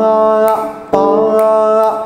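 A man singing the note pa (panchamam) of a Carnatic melody twice at the same pitch, each note held steady for about a second with no ornament. The two notes mark the two beats the panchamam is given here.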